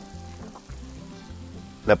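Provolone sizzling faintly in a hot provolonera (provoleta dish) that has just come off the grill; the cheese has too little moisture and does not melt. Quiet background music plays under it.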